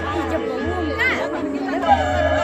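Audience voices chattering over music accompanying a stage dance, with a pulsing low beat under held tones.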